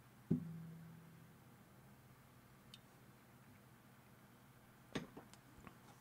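Mostly quiet room tone. A soft bump about a third of a second in sets a low string of an acoustic guitar ringing, fading out over about a second. A few light clicks come near the end.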